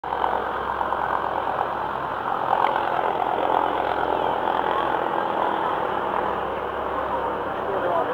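Steady rushing noise on board a tour boat: the boat's engine hum with water and wind, and faint passengers' voices underneath.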